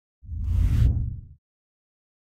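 A deep whoosh transition sound effect that swells and fades over about a second.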